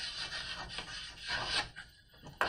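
Chalk scratching on a blackboard in a quick run of strokes as a word is handwritten.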